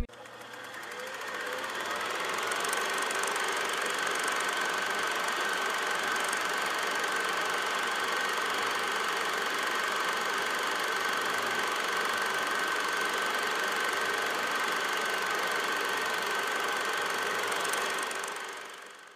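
Old film projector sound effect: a steady mechanical whir with a thin steady whine running through it, fading in over the first couple of seconds.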